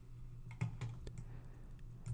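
A few faint, scattered clicks from working a computer, over a low steady hum.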